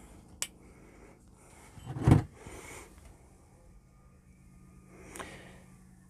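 A beer can's ring pull opened: a sharp crack and about a second of hissing gas, two seconds in. Near the end, softer noise as the beer starts to pour into a glass.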